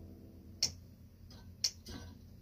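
Metronome ticking about once a second, two sharp clicks, with a couple of fainter clicks between them. The last of a held keyboard chord dies away at the start.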